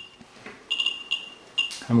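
Ludlum Model 12 count ratemeter's audio, its Geiger clicks crowding into a high-pitched squeal at a high count rate from a Cs-137 hot particle. The squeal drops out for about the first half second, comes back, and breaks off once more briefly near the end.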